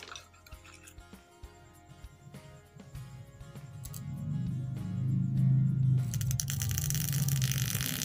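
Angle-grinder armature fed low-voltage current through two wire leads held on its commutator, the wire tips scraping and clicking over the commutator bars. From about the middle a low hum builds and gets louder as a large speaker magnet is brought close and the armature turns faster, with a rasping hiss joining in near the end.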